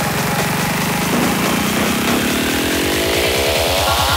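Psytrance music: a buzzing synth riser whose pitch climbs steadily and then faster and faster toward the end, over a fast pulsing bass.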